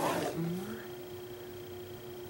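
A short rustling scrape as the painting board is slid and turned on the table right at the start, with a brief wordless voiced sound from the painter just after, over a steady low hum.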